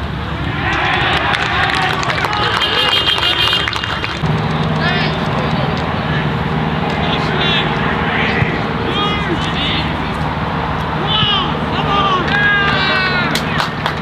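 Players and onlookers shouting short calls across an Australian rules football ground over general outdoor noise and chatter. A steady low hum begins about four seconds in and carries on under the calls.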